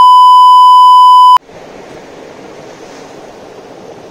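Edited-in censor bleep: a loud, steady single-pitch beep that cuts off abruptly about a second and a half in, followed by a faint steady hiss.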